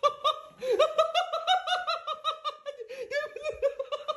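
A person laughing hard and high-pitched, a rapid string of 'ha' sounds about seven a second, drawn out into a longer held stretch around the middle before breaking back into quick bursts.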